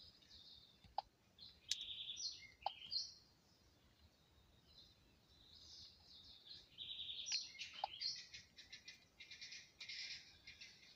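Faint birdsong: short chirping calls, with a faster trilling run of calls in the second half. A few light clicks among them.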